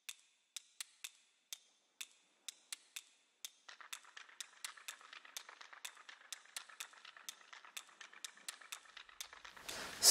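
Faint, sharp clicks of plastic LEGO parts being handled and pressed onto the road plates, about two a second. From about four seconds in, a faint rustle joins and the clicks come more often.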